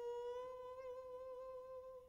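A single long held note, nearly pure in tone, from a Korean wind and string quartet ensemble: it lifts slightly in pitch, wavers, and fades away near the end.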